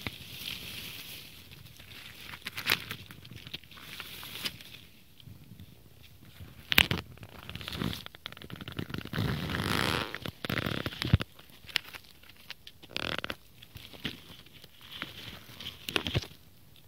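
Dry fallen leaves and twigs rustling and crackling as someone moves through leaf litter on the forest floor, with scattered sharp snaps, the loudest about seven seconds in.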